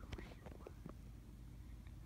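A person whispering faintly, with a few soft clicks in the first half-second.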